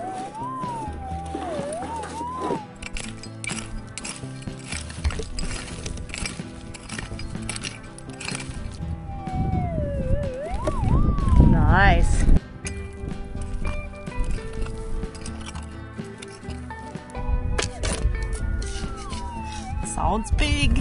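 Background music with held chords, and over it the wavering signal tone of a Minelab GPX 6000 metal detector rising and falling as the coil passes over a target, at the start and again around halfway. A louder low rumble comes in the middle, along with a few clicks.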